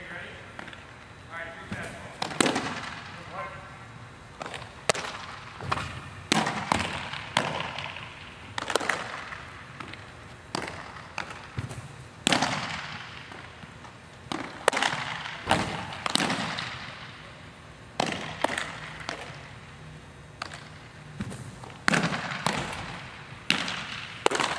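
Baseballs popping into catchers' mitts again and again, sharp pops at irregular intervals of about one to two seconds, each ringing on in the echo of a large indoor hall.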